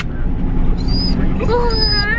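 A dog whining in thin, high tones, about a second in and again near the end, over the steady low rumble of the car cabin.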